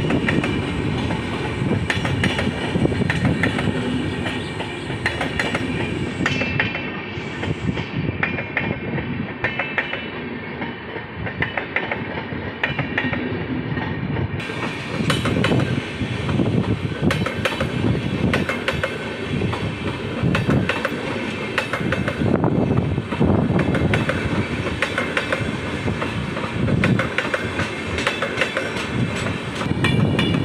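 Express train of LHB passenger coaches passing close by, its wheels clattering over the rail joints in a steady run of clicks over a continuous rolling rumble.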